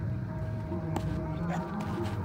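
Low steady outdoor background murmur with faint distant voices, a thin steady tone, and a few light clicks about a second in and near the end.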